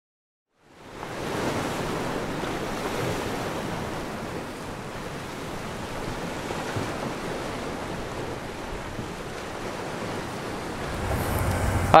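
Ocean surf washing: a steady rushing noise that starts just under a second in, swelling and easing gently.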